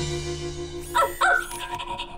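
A short animal-like yelp about a second in, a cartoon sound effect for the robot-dog Mars rover, over background music with held notes.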